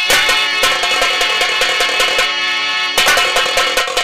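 Live nautanki folk accompaniment: hand drums struck in quick, irregular strokes under steady held instrument tones, with a burst of strokes about three seconds in.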